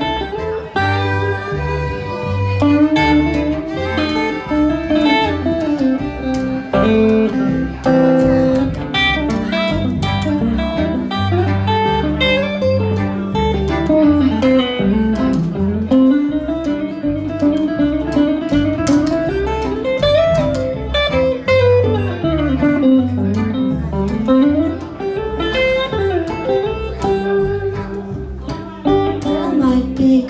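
Live instrumental break of a blues-tinged song: hollow-body electric guitar, plucked upright bass and bowed violin playing together, the bass pulsing steadily underneath. Through the middle a melody line slides up and down in pitch several times.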